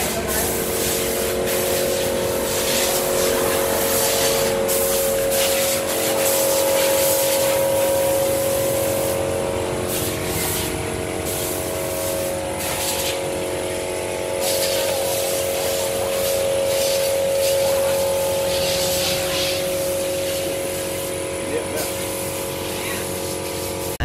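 A steady engine or motor hum held at a constant speed, with a slight shift in its tone about six seconds in.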